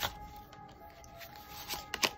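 Tarot cards being handled as a card is drawn from the deck: soft rubbing with a sharp click near the start and a couple more near the end, over faint background music of steady held tones.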